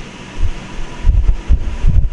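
Low, dull thumps and rumble of hands handling cards on a cloth-covered table, a few louder bumps in the second half.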